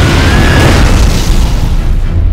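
Bomb explosion from an air raid: a loud blast with a deep rumble that carries on through the two seconds.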